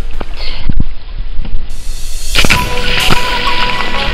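Low rumble and a few sharp thumps on the microphone, then, about two and a half seconds in, a loud burst of splashing water as someone jumps off a concrete dock into a lake and the camera is splashed.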